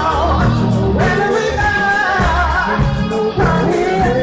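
Live rock band playing loudly: sung vocals over distorted electric guitars, keyboard, bass and drums.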